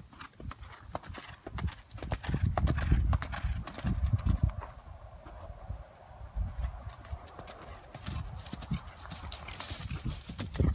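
Hoofbeats of a ridden horse moving out on gravel footing, a run of quick thuds and crunches. They are loudest from about two to four and a half seconds in, ease off, then grow louder again near the end.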